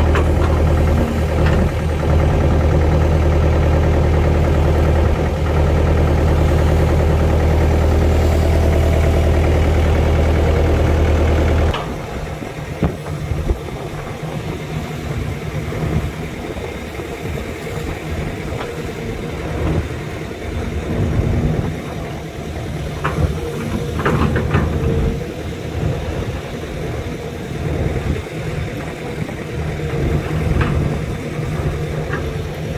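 SANY crawler excavator's diesel engine running with a loud, steady low hum. About twelve seconds in the sound drops suddenly, and the engine goes on quieter and more unevenly, with a few scattered knocks as the excavator digs with its bucket.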